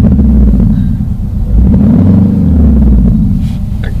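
Synthetic motorcycle engine sound from the Renault R-Link's R-Sound feature, played through the car's cabin speakers and following the throttle: it revs up and back down twice, the second time rising higher.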